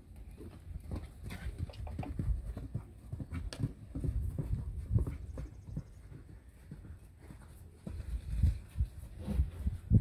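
Horse hooves thudding irregularly on the sandy arena footing, a horse moving close by, with heavier thuds near the end.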